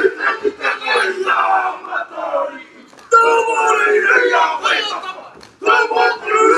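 A group of men chanting a haka in loud unison shouts. The chant breaks off briefly about halfway and comes back in loudly about three seconds in, with another short break near the end.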